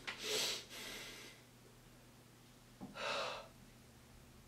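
Two sharp, breathy gasps from a young man in discomfort, the first right at the start and the second about three seconds in.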